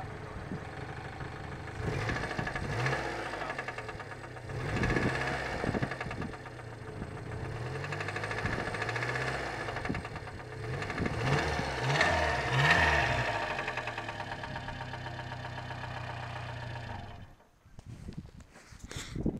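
Subaru Sambar kei truck's rear-mounted engine idling and given gas several times, its revs rising and falling, then cutting out shortly before the end. The engine is in trouble and sounds different from normal.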